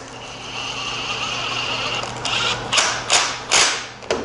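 Makita cordless impact driver driving a two-inch square-drive screw into a plywood stop block: a steady motor whine for about two seconds, then three or four short loud bursts near the end.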